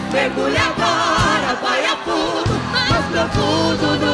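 Live gospel worship singing: several voices singing together into microphones over a band, with regular drum beats underneath.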